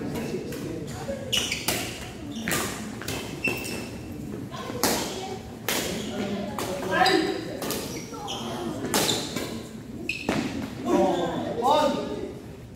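Badminton rally: sharp hits of rackets on the shuttlecock, with short squeaks of shoes on the court floor and people's voices around the court.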